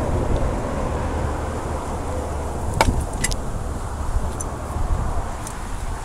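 A steady low mechanical rumble, with two short sharp clicks a little before the middle.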